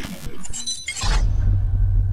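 Electronic intro sting with glitch sound effects: a glassy, shattering crash with high ringing tones about half a second in, then a deep, steady bass drone from about one second.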